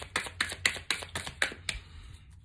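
A hand-trimmed tarot deck being shuffled between the hands: a quick run of light card slaps and clicks, about six a second, stopping near the end.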